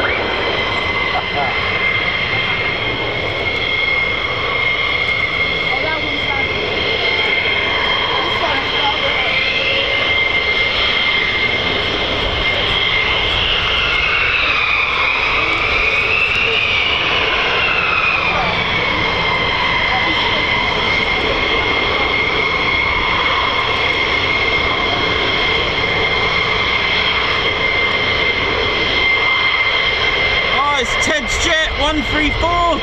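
F-15E Strike Eagle jets taxiing on their twin Pratt & Whitney F100 turbofans at low power: a steady high-pitched whine. In the middle a second whine rises and falls in pitch for several seconds.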